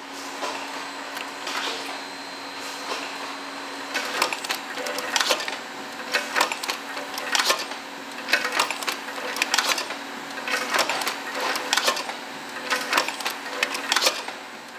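Pot filling and sealing machine on a dairy production line running: a steady hum with sharp mechanical clacks about once a second as it cycles.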